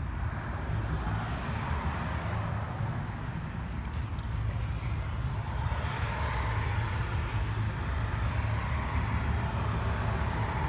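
Road traffic noise: a steady low rumble, with a passing vehicle swelling louder about six seconds in.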